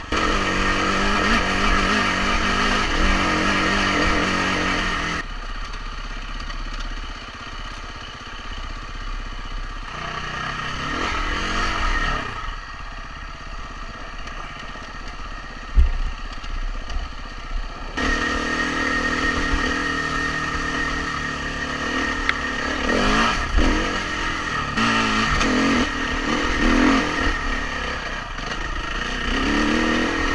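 KTM 350 EXC-F dirt bike's single-cylinder four-stroke engine running while being ridden along a trail, its pitch rising and falling repeatedly as the throttle is worked. A single sharp knock about sixteen seconds in, and the engine tone shifts suddenly around five and eighteen seconds in.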